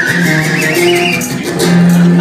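Live band music with a strummed guitar and held bass notes, over which a slide whistle glides upward in a wavering rise and stops about halfway through.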